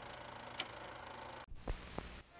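Faint steady hiss and low hum of room tone, which cuts out suddenly about a second and a half in. Two short soft clicks follow near the end.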